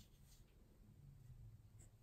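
Faint scratching of a fine-tip gel pen gliding over paper as letters are hand-written.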